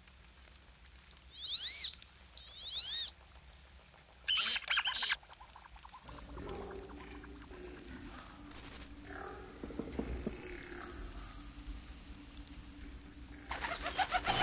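Two bird-like chirping calls, each sweeping up and then down in pitch, then a short rattling burst. Later comes a steady, high-pitched hiss lasting about three seconds.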